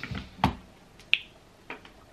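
A few short clicks: one sharp click about half a second in, a brief higher click a little after a second, and a fainter one near the end.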